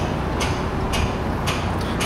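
Nissan C4000 propane forklift engine running as the truck drives, a steady low hum. A short high hiss repeats about twice a second over it.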